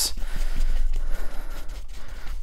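Paintbrush scrubbing acrylic paint onto a stretched canvas in circular strokes, a soft scratchy rustle over a steady low hum.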